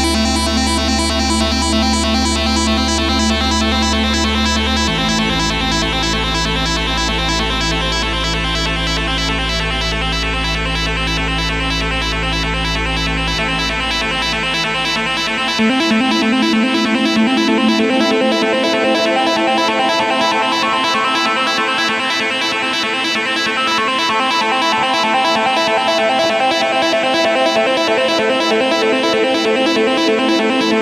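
Instrumental background music with sustained tones; the deep bass drops out about halfway through.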